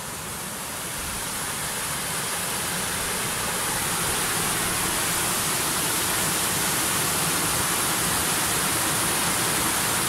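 Water pouring over a small wooden weir: a steady rushing that grows louder over the first few seconds, then holds.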